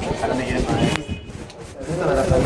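A rubbing, scraping noise with a sharp click about a second in, and faint voices behind it.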